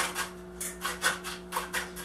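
A chopstick jabbed and wobbled into coarse, gravelly bonsai soil in a pot, each stroke a short gritty scrape, about four a second. It is packing the rocks in around the roots to get rid of air pockets.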